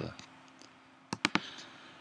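A few quick computer mouse clicks a little over a second in, against quiet room tone.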